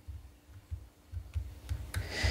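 Faint handling noise from a plastic action figure as its shoulder joint is worked by hand: soft low bumps, with a few small clicks in the second half.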